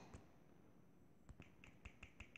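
Faint clicks from tapping the backspace key of a tablet's on-screen number keypad, about four quick taps in the second half, the first second near silent.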